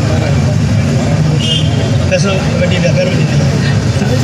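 Open-air street ambience: a steady low rumble of road traffic with faint, indistinct voices.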